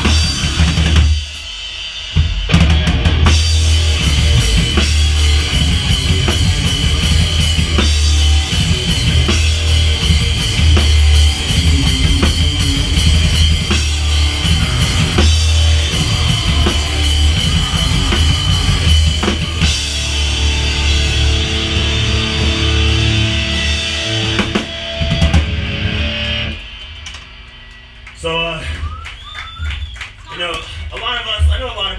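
A live rock band with drum kit, electric guitar and bass plays loudly, with heavy kick drum and bass. The band stops briefly about a second in, then comes back in full. The song ends near the end, leaving amplifier ringing and a voice.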